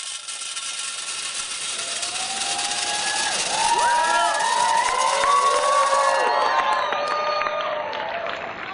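A stream of gumballs pouring into a glass jar makes a continuous rattling hiss that stops about six seconds in. From about two seconds in an audience whoops and cheers over it, loudest in the middle, and the cheering goes on after the pouring stops.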